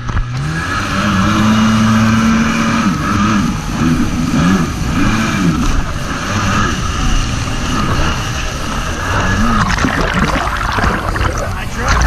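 Kawasaki SX-R 800 stand-up jet ski's two-stroke twin engine running under way: its pitch climbs in the first second, holds steady, then rises and falls repeatedly, over a steady hiss of water and spray. Near the end, loud splashing rushes in.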